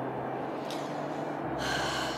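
A person's short, sharp breath in near the end, over a steady low hum of background noise.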